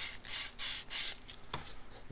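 320-grit sandpaper wrapped on a maple block rubbed along a taped wooden edge in a few quick strokes in the first second. It is sanding through the painter's tape at the corner so the tape breaks cleanly along the edge.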